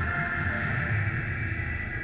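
Music playing continuously, with a pulsing low end.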